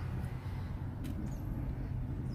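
Steady low background rumble with two faint ticks, about a quarter second and a second in.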